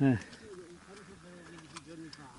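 Speech only: a man's short "eh" at the start, then faint voices of people talking further off.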